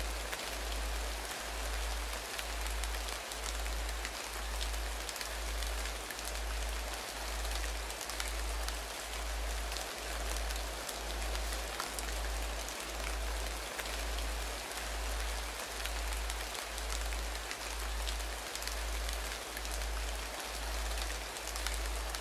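Binaural meditation soundtrack: a steady rain-like hiss with faint patter, over a deep low hum that pulses evenly about once a second.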